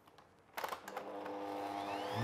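A stand mixer's control knob clicks about half a second in and its electric motor starts running, beating the butter cream. Its whine climbs in pitch near the end as it speeds up.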